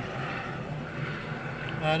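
A steady engine-like hum in the background, with a man's brief hesitant "uh" at the very end.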